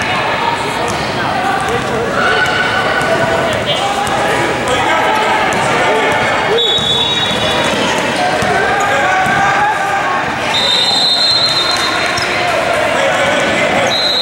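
A basketball being dribbled on a gym floor among the shouts and chatter of players and spectators in a large gym. A couple of high, held squeals cut through, the first about six seconds in and the second near ten seconds.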